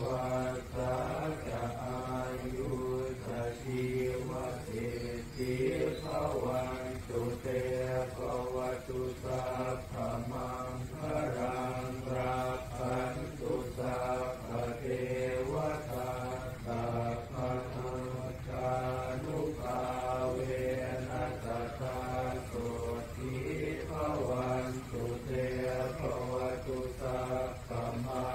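A Buddhist monk chanting, one male voice repeating short syllables in a steady rhythm on a nearly level pitch, with hardly a pause.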